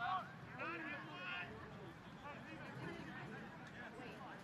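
Faint, distant voices calling out across an outdoor soccer pitch, a few short calls in the first second and a half, over a low steady outdoor murmur.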